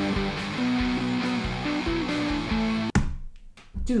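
A punk rock chorus with drums and guitars, over which an electric bass plays a high melodic octave riff high up the neck on its high string instead of low root notes. The music stops abruptly about three seconds in.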